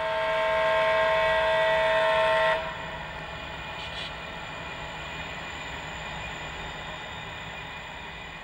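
A model diesel locomotive's onboard sound sounds a multi-chime horn in one long blast that cuts off about two and a half seconds in. After that, a quieter, steady diesel engine sound continues as the locomotives roll past.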